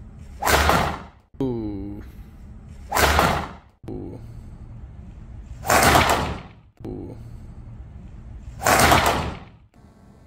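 Four golf driver swings in a row, each a loud whoosh and strike lasting about half a second, roughly every three seconds. Before the first two a fainter falling tone is heard.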